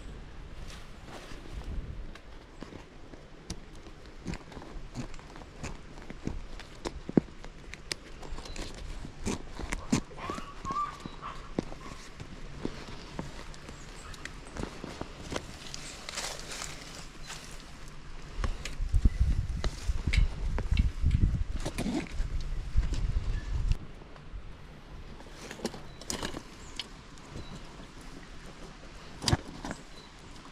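Close-up handling noise of packing a bicycle: bag fabric rustling, cords being pulled through and tied, and light clicks and knocks from buckles and the metal rear rack. A few seconds of louder low rubbing and thumping come past the middle.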